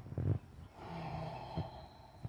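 A person's breath: a short exhale just after the start, then a longer sigh lasting about a second.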